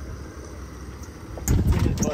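Low, steady rumble of wind and boat noise on the microphone at sea. About a second and a half in it jumps to a loud burst of buffeting and handling noise.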